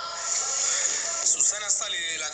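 Acted radio-drama dialogue, voices speaking over background music.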